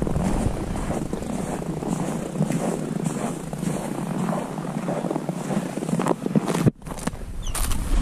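Footsteps crunching through snow at a brisk walk, with rustle on the handheld microphone; the sound cuts out briefly a little before the end.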